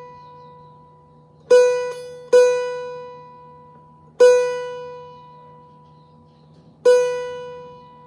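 Open B (Si) string of a Rozini student-model cavaquinho plucked four times, each note ringing out and fading. Between plucks the string is being loosened slightly to flatten it, compensating for a 12th-fret octave that runs sharp, which the player puts down to poor fretboard construction.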